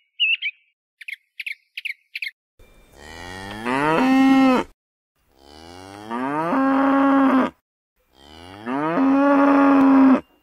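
A small bird gives a few short chirps, then cattle moo three times, each a long call of about two seconds that rises in pitch and then holds steady.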